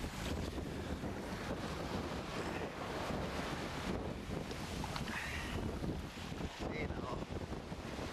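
Wind buffeting the camera microphone in a steady low rumble, with the wash of surf on a sandy beach behind it.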